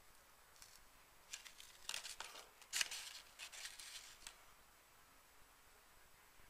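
A light, porous chunk of charred wood ash crunching and crackling as it is squeezed and handled in the fingers over a cardboard box: a run of short, crisp crunches, the loudest about three seconds in, dying away after about four seconds.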